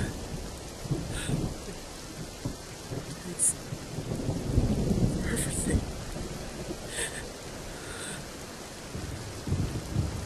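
Steady rain with a low rumble of thunder that swells about four to six seconds in, and a few short faint sounds on top.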